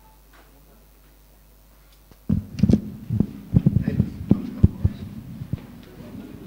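Low room hum for about two seconds, then a run of loud, irregular low thumps and rubbing: microphone handling noise as the speaker's microphone is moved.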